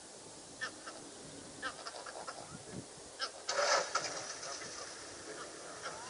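Birds calling in the bush: a scatter of short, high calls, then a louder, harsh call lasting about half a second near the middle.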